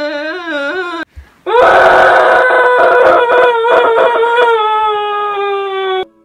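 A girl's voice wailing: a wavering cry that breaks off about a second in, then a loud, long scream-like wail held on one slightly falling note until the end.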